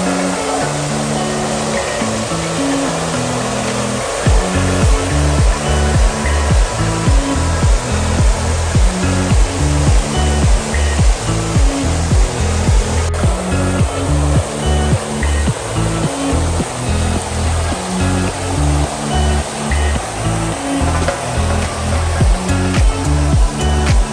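Background music with a bass line that turns into a strong, pulsing beat about four seconds in, over the steady rush of fountain jets spraying into a pool.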